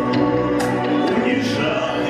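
A man singing a song into a handheld microphone over a recorded backing track, holding long notes, with light percussion strokes in the accompaniment.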